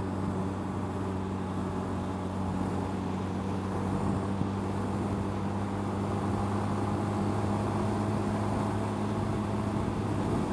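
1985 Honda Rebel 250's air-cooled parallel-twin engine running at a steady cruising speed, a steady drone, with wind noise on the helmet-mounted microphone.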